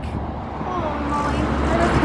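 Road traffic noise from passing cars, with the noise gradually swelling as a car approaches. Faint voices murmur in the middle.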